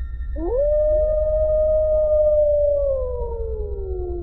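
Wolf howl: one long call that rises about half a second in, holds steady, then slowly falls near the end. A second, higher howl joins as it falls, over a steady low rumble.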